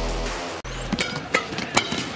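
Background music that cuts off about half a second in. Then comes a fast badminton exchange: three sharp racket strikes on the shuttlecock in quick succession, over arena crowd noise.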